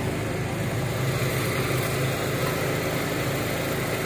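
An engine idling steadily, an even low hum with no breaks or strokes.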